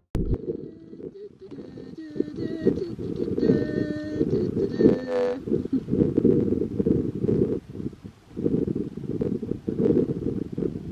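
Wind buffeting the camera microphone in gusts, a deep rumbling noise. Faint pitched sounds come through in the background, mostly in the middle stretch.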